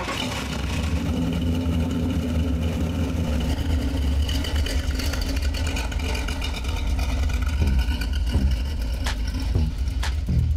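A classic car's engine running, coming on suddenly and loudly with a deep, steady low note as the car pulls away from standstill.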